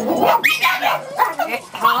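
A dog barking among people's voices.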